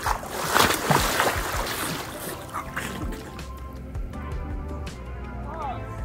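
A person falls backward into a swimming pool in a life jacket: a loud splash lasting about a second and a half, then water sloshing, under background music.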